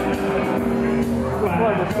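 Live band music from electric guitar and keyboard, with notes held steadily; a man's voice comes in near the end.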